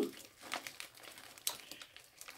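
Faint crinkling of a foil snack bag, a Flamin' Hot Cheetos bag handled as a hand rummages inside it, with a few sharp crackles, the clearest about a second and a half in.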